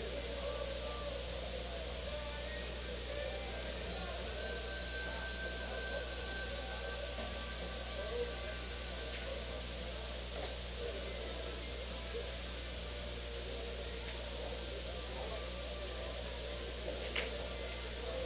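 Pool-hall room tone: a steady low electrical hum under faint background music and chatter, broken by three sharp clicks of pool balls being struck, spread well apart.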